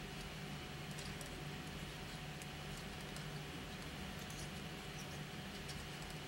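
Faint, sparse clicks of metal-tipped circular knitting needles and soft yarn rustling as stitches are worked, over a steady low hum.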